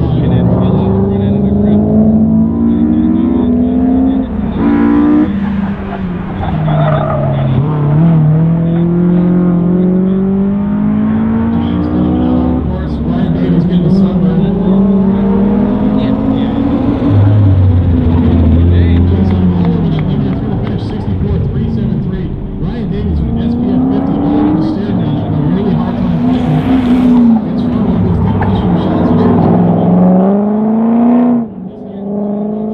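A car engine driven hard through a cone course, its pitch climbing and dropping again and again as the driver accelerates and lifts between the cones.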